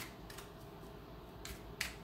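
A few light, sharp clicks, two of them close together near the end, over a faint steady room hum.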